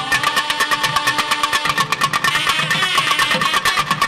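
Nadaswaram playing a Carnatic melody, its reed tone held and gently bending, over rapid thavil drum strokes.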